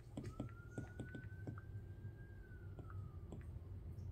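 Stylus tip tapping on a tablet's glass screen while typing on the on-screen keyboard: about a dozen faint, light taps in an uneven rhythm.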